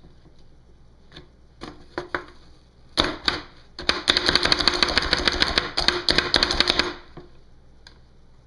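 Pampered Chef food chopper's spring-loaded plunger slapped down again and again, its blades chopping an onion inside the plastic container. A few separate clacks come first, then about three seconds of rapid clattering strikes.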